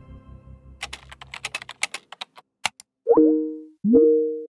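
Computer keyboard typing, a quick run of clicks lasting about two seconds, followed by video-call chimes: each swoops quickly upward and settles into two held tones, about three seconds in and again just before the end.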